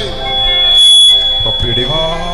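A single steady high-pitched squeal, loudest about a second in and fading near the end, typical of microphone feedback through a PA system.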